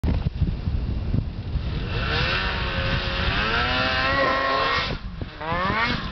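Ski-Doo snowmobile engine revving up, its pitch climbing for about three seconds, then dropping off suddenly just before the five-second mark and revving sharply up again near the end as the sled comes off the rock jump.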